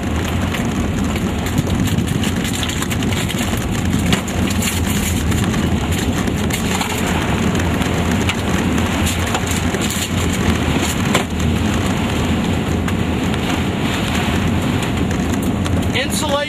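Rain and tornado-borne debris pelting a moving vehicle's roof and windows: a dense spatter of small hits over a loud, steady roar of wind and vehicle noise.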